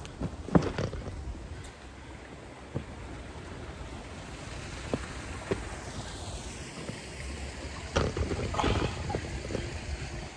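Steady outdoor background noise with a few short, scattered knocks, then a cluster of knocks and clatter about eight to nine seconds in.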